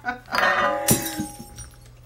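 Glass breaking: a sharp crash about a second in, with steady ringing tones under it that fade out.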